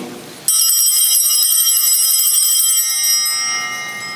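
Altar bells (sanctus bells) shaken at the elevation of the consecrated bread: a bright multi-toned ringing with a rapid shimmer that starts suddenly about half a second in, holds for nearly three seconds, then dies away.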